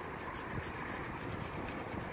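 Faint, steady scraping of a scratch-off lottery ticket's coating being scratched away.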